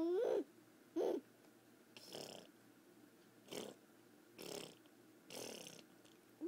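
A toddler's short voiced squeal, rising in pitch, at the start and a brief vocal sound about a second in, followed by four breathy huffs about a second apart.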